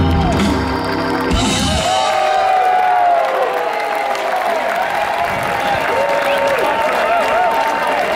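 A live rock band with organ, guitar, bass and drums plays its final notes, which stop about a second and a half in. A concert crowd then cheers, applauds and whoops.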